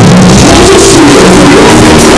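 Live band music with a singing voice over a concert sound system, recorded so loud that it is heavily distorted.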